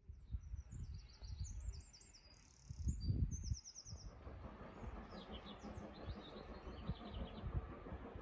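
Small songbirds chirping in quick, rapid-note phrases over a low, irregular rumble that is loudest about three seconds in.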